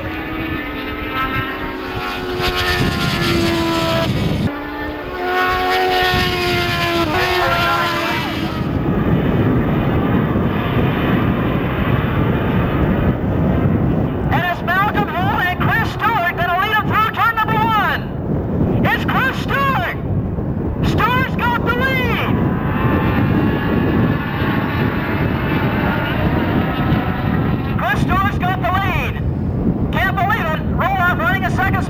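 Engines of a pack of road-racing motorcycles running at speed across the circuit, heard as a steady engine note with held tones in the first few seconds. A public-address announcer's voice comes through indistinctly about halfway in and again near the end.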